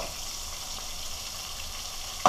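Two flour-and-buttermilk-coated white sea bass fillets sizzling steadily in hot oil in a frying pan.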